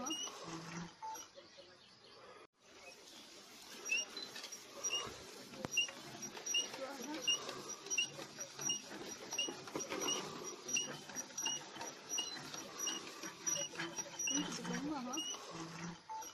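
Hand crank turning steadily, squeaking once per turn, a short high squeak about one and a half times a second.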